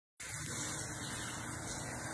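Steady rush of running water from a shower.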